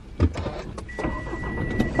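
Inside a car: a short knock, then a single steady electronic beep from the car's dashboard lasting about a second.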